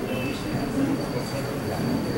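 Indistinct chatter of many people talking at once in a reverberant hall, with a faint steady high-pitched whine running through it.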